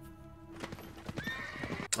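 Horse hooves clip-clopping and a horse whinnying, with music, from a period TV drama's soundtrack.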